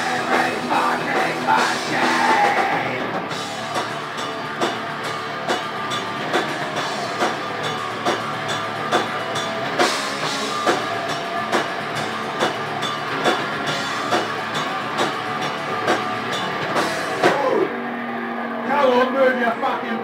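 Thrash/death metal band playing live: distorted electric guitars, bass and drums, with hard drum and cymbal hits about once a second. Near the end the drums drop out briefly, leaving held guitar notes.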